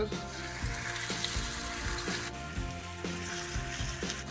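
Pork knuckles sizzling steadily as they sear on the hot cooking surface of a ceramic kamado grill.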